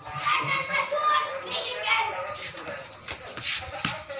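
Children's voices calling out and chattering while they play, with no words picked out clearly.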